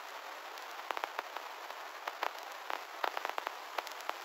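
Steady thin hiss with irregular crackles and pops scattered through it, a noise texture like a vinyl-crackle effect left after the music has faded out.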